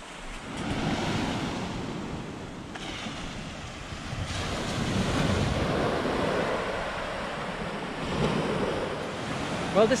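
Small waves breaking and washing in over a flat rock shore, the surf swelling and easing, with wind on the microphone.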